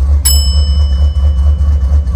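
A Jeep engine idling, heard from inside the cab as a loud, steady low hum. A single bell-like ding rings out about a quarter second in and fades slowly.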